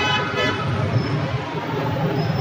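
A brief horn toot at the start over a steady low street rumble.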